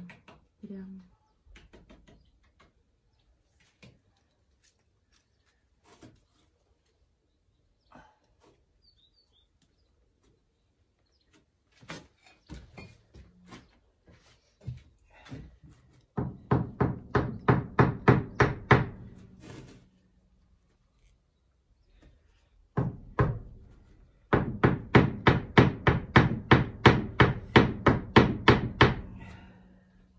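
A rubber mallet knocking on the brick stove work: a few scattered single blows, then a run of quick blows, about four or five a second, for some three seconds, and after a short pause a longer run of about five seconds.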